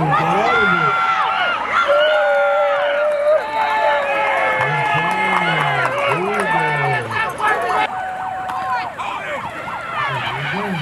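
Football spectators shouting and cheering, many voices yelling over one another, some holding long drawn-out yells, as a ball carrier breaks through and scores.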